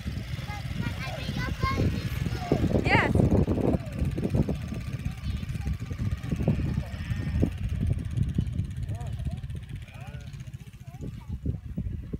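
Goats and sheep of a grazing herd bleating: one loud, wavering bleat about three seconds in and a few fainter ones later. Underneath is a steady low rumble of wind on the microphone and a motorcycle engine running.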